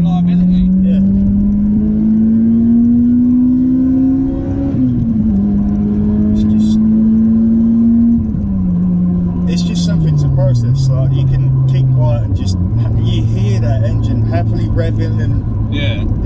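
A Toyota Corolla T Sport's 1.8-litre VVTL-i four-cylinder engine, heard from inside the cabin, revving up steadily under acceleration for about four and a half seconds. The revs then drop suddenly at a gear change, hold briefly, and fall away in steps to a steady low cruise.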